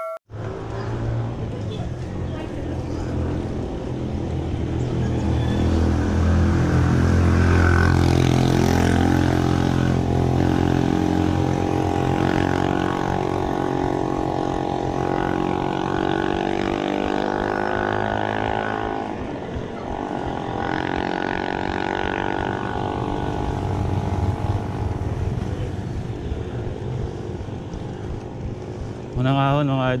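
A motor vehicle's engine droning steadily, growing louder over the first several seconds and then holding, heard from a bicycle on the road.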